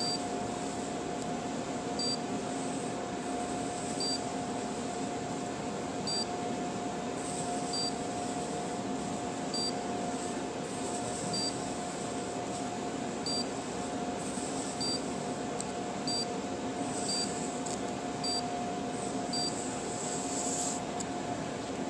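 Edison robot's buzzer giving short high beeps, about one every two seconds, over a steady hum and hiss.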